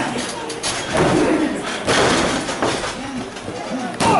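Spectators' voices shouting with a few sudden thuds of a wrestler's body and feet landing on the wrestling ring canvas.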